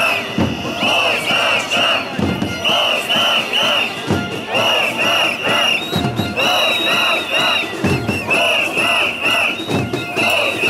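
A large crowd of protesters chanting and shouting together in a repeated rhythm, with a steady shrill tone running over the voices.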